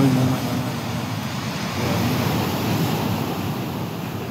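Ocean surf breaking and washing up on a beach, a steady rushing sound.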